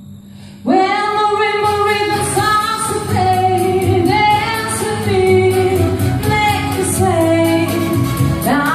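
A woman sings into a handheld microphone over a backing track. Her voice comes in under a second in and holds long notes that slide from pitch to pitch.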